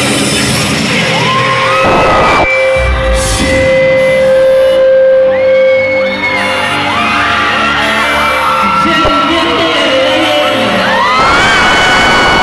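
Live pop music played loud through a concert hall's PA, with a long held note in the middle and a heavy bass hit about three seconds in. High screams and whoops from fans rise over it several times.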